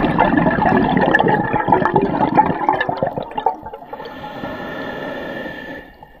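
Scuba diver breathing through a regulator underwater: a long exhale of bubbles rushing and gurgling, then a quieter, steady hissing inhale through the regulator from about four seconds in.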